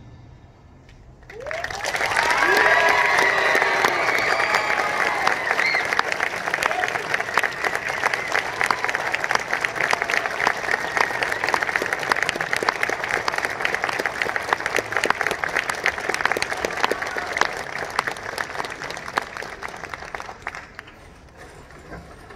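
Audience applauding after a brief hush, with cheers and whoops at first, then steady clapping that fades near the end.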